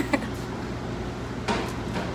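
Steady low hum of room noise, with a brief laugh at the start and one sharp crunch about one and a half seconds in as a crisp, fresh-baked pizza crust is bitten into.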